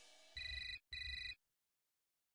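Desk telephone ringing for an incoming call: two short electronic rings in quick succession.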